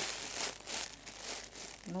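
A plastic bag crinkling inside a fabric pouch stuffed with synthetic fibre fill as hands press and handle it. The rustling is loudest in the first second and then tails off.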